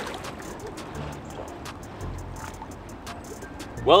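Quiet background music over the steady rush of a flooded, fast-flowing creek.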